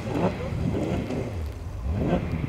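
Rally car engine running on a snowy road, its pitch rising and falling as the revs change, with people's voices mixed in.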